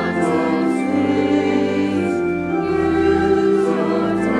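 Small mixed choir of men and women singing a hymn, holding long notes that change about halfway through.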